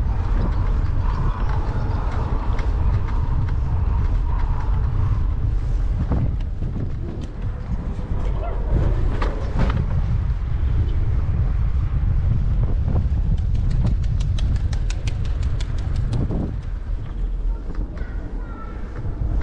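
Wind buffeting the microphone of a camera riding on a moving bicycle, a loud, steady low rumble, with a few knocks from the ride over paving. Later on comes a quick run of light ticks.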